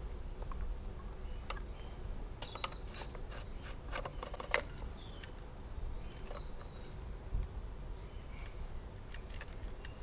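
Outdoor ambience: a steady low wind rumble on the microphone, a few short bird chirps, and scattered light clicks from handling a petrol strimmer.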